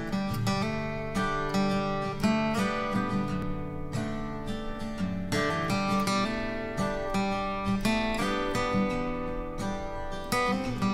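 Background music led by a strummed and plucked acoustic guitar.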